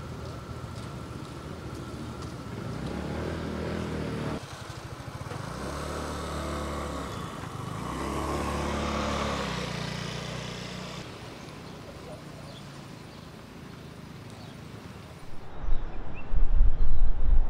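Street ambience with motor vehicle engines passing, swelling and fading three or four times, then a quieter steady background hum.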